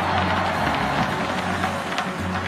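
Music playing through the arena's sound system with a steady bass line, over crowd noise.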